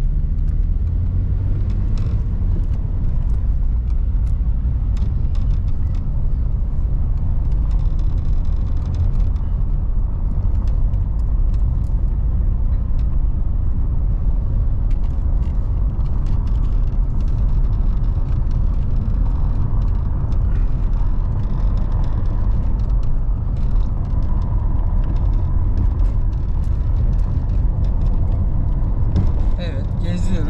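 Road and engine noise heard inside a moving car: a steady low rumble from the tyres on a rough road, with scattered small clicks and rattles.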